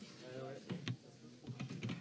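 Faint distant voices and a few sharp clicks and taps: two about three-quarters of a second in and a quick cluster near the end.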